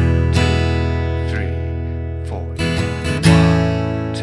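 Steel-string acoustic guitar strummed in a counted rhythm pattern, chords ringing out and fading between strums. A quick cluster of strums comes about two and a half seconds in, ending in the loudest strum near the end.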